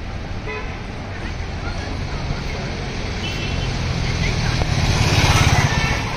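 Street traffic: a vehicle engine passes close by, building to its loudest about five seconds in, with a short horn toot about three seconds in.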